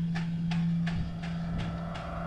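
Laptop keys clicking under typing fingers, about three keystrokes a second, over a steady low sustained note from the film's score.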